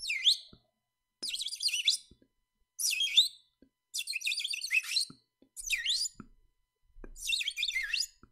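Bird song: about six short phrases of fast, high chirping notes with quick sliding pitches, separated by brief pauses.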